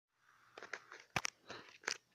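Hand-held phone handling noise: fingers rubbing and knocking on the phone close to its microphone, with a rustle and several sharp knocks, the loudest a quick pair a little past one second and another near the end.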